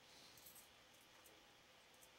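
Near silence: a faint steady hiss with a few faint, short high clicks in the first half second.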